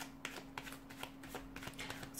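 Tarot cards being shuffled by hand: a run of faint, irregular card clicks, about five a second.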